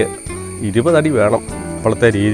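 A man speaking, with a steady high-pitched insect drone, typical of crickets, running unbroken behind the voice.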